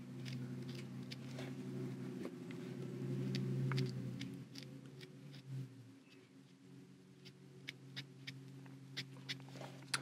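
Faint scratchy ticks and taps of an ink applicator being dabbed lightly through a stencil onto paper, over a low steady hum that fades out about six seconds in.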